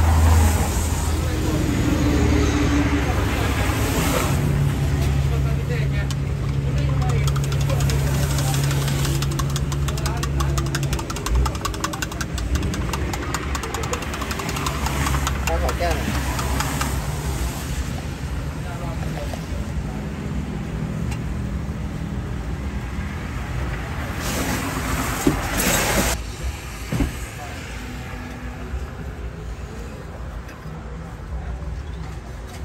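A nearby engine runs with a steady low hum, over the light clinking of a metal spoon stirring milk in a glass measuring jug. A short loud burst of noise comes near the end.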